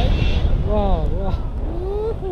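Wind from the paraglider's flight buffeting the camera microphone in a steady low rush, with a person's voice giving short wordless calls about a second in and again near the end.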